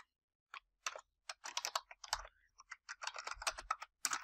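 Typing on a computer keyboard: a run of quick, irregular keystrokes in clusters, starting about half a second in.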